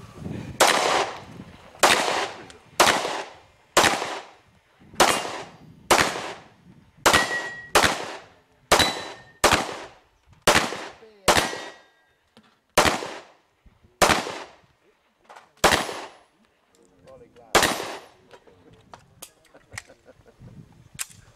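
HK P2000 pistol firing a string of about seventeen shots at a steady pace of roughly one a second, each shot leaving a short ringing echo. The shots thin out over the last few seconds and stop near the end, followed by a few faint small clicks.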